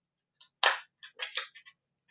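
Scissors snipping into a cardboard tube: one sharp cut about two-thirds of a second in, then three smaller snips in quick succession.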